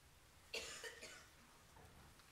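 A person coughing once, a short double burst about half a second in, against near-silent room tone.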